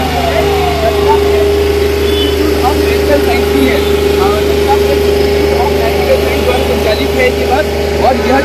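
An engine idling with a steady, unchanging hum, alongside scattered background voices.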